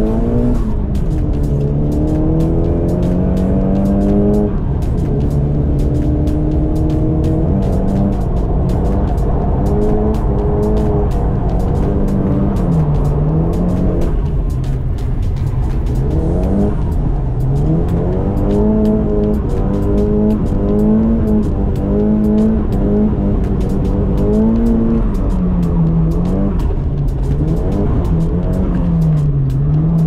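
Nissan Silvia S15's engine heard from inside the cabin, revs rising and falling over and over as the car is drifted, with stepped climbs like gear changes and repeated swoops down and back up.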